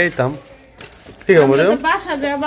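Speech: a person talking in short bursts, with a brief pause about half a second in that holds a few faint clicks.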